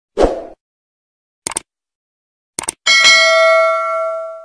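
Subscribe-button animation sound effects: a short pop, two quick mouse-style clicks about a second apart, then a bright bell ding that rings and fades out.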